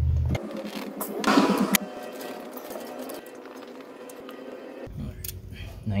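Faint metallic clicks of hand tools on the valve rocker arm adjusters of a diesel engine, with a brief muttered voice about a second in. A low hum drops out about half a second in and comes back near the end.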